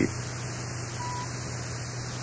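Steady hiss and low hum of an old tape soundtrack, with one short, faint, single-pitched beep about a second in. The beep is a slide-advance cue tone of a slide-tape presentation.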